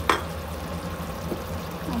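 Sauce with cornstarch slurry just poured in, simmering in a wok, over a steady low hum. Right at the start there is a short sound that falls quickly in pitch.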